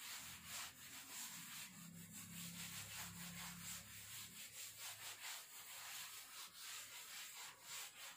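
A cloth duster rubbing across a chalkboard in quick repeated strokes, wiping the chalk writing off. The sound is faint.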